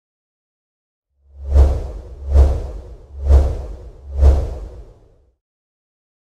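Logo sting sound effect: four whooshes, roughly a second apart. Each falls from a high hiss into a deep low boom as an animated logo builds on screen.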